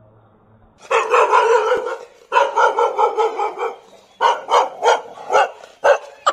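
A dog barking, starting about a second in: two runs of rapid barks about a second long each, then five short separate barks near the end.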